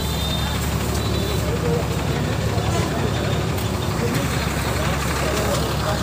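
A large vehicle's engine running steadily as a continuous low rumble, with the murmur of a crowd's voices over it.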